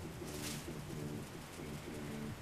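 Faint pigeon cooing: a low call in short repeated notes, one after another through the two seconds, with a brief soft rustle about half a second in.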